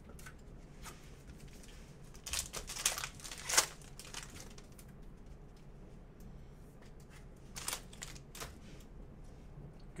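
A stack of Panini Spectra trading cards being handled and flipped through by hand, giving rustling and crinkling bursts. The bursts cluster from about two to four seconds in, sharpest near three and a half seconds, with two shorter ones later.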